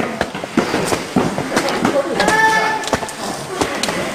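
Footsteps on stone steps as a group climbs a stairway, with people's voices and one short, high-pitched voice call a little past halfway.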